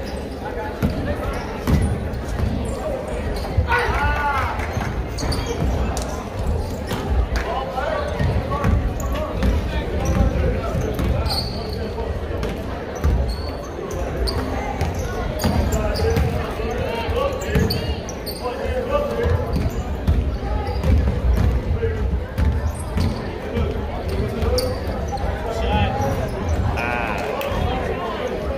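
Basketball being dribbled on a hardwood gym floor during a game, repeated low thumps among the steady chatter and voices of spectators in a large gym.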